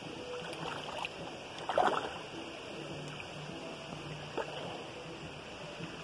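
Shallow, pebbly stream running steadily, with the slosh and splash of bare feet wading through it; the loudest splash comes about two seconds in, a smaller one a little past the middle.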